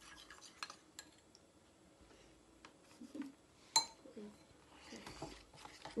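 Metal teaspoons stirring icing and clinking against ceramic bowls in small scattered clicks. There is one sharp, ringing clink a little before four seconds in.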